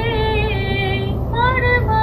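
Background song with a high female voice singing long, held notes that slide between pitches, over a steady low hum.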